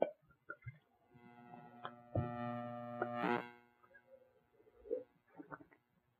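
Red wine poured from a bottle into a wine glass, faint, with small clicks of glass handling. About two seconds in, a low hummed 'mm' in a man's voice lasts about a second and ends in a short breathy rush.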